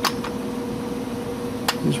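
Small clear plastic drill-bit cases handled, giving two sharp clicks, one at the start and one near the end, over a steady background hum.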